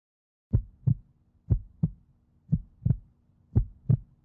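Heartbeat sound: pairs of low thumps, lub-dub, about one beat a second, four beats in all, starting about half a second in over a faint steady hum.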